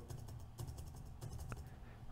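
Faint computer keyboard keystrokes, a few light clicks as a number is typed in, over a low steady hum.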